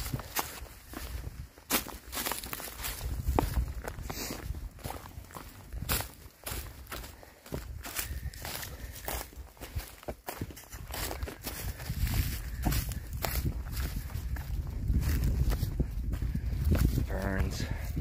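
Footsteps crunching irregularly through dry fallen leaves on a rocky forest trail, over a low rumble on the microphone.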